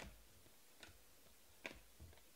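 Three faint ticks a little under a second apart: the snap of chromium Panini Prizm football cards being slid one at a time off a stack held in the hand.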